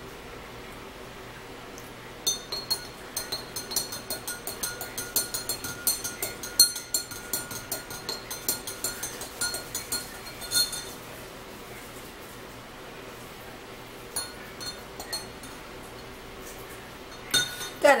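A metal spoon stirring in a drinking glass, clinking quickly and repeatedly against the glass for about eight seconds, then a few more clinks a little later.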